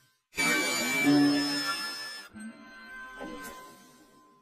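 A short musical logo jingle: it starts suddenly a moment in, is loudest for about two seconds, then a quieter ringing tail fades away.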